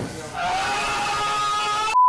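Electric hair clippers with a guard running through hair, a steady buzz that starts about half a second in.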